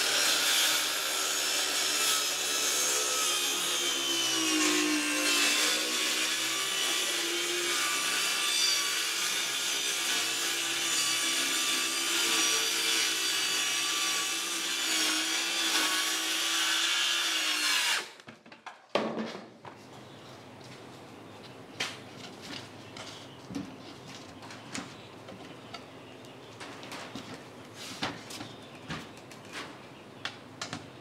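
Circular saw making a long cut through a sheet of plywood, its motor whine dipping under load partway through. The saw stops abruptly about 18 seconds in, and light knocks and handling follow.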